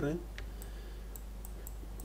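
A few faint clicks from a computer mouse and keyboard, over a low steady hum.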